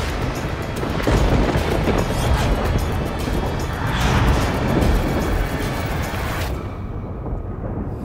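Dramatic background score with a heavy low end, swelling about a second in and again near four seconds. About six and a half seconds in, the higher sounds drop away and only a low rumble is left.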